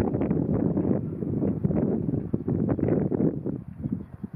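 Wind buffeting the microphone: a loud, gusty low rumble that dies down near the end.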